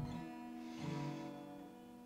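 Acoustic guitar played live, soft notes ringing and slowly fading, with a new chord struck a little under a second in.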